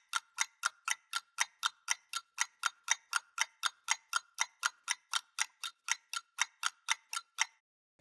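Clock-ticking sound effect: a steady train of sharp ticks, about four a second, that stops shortly before the end.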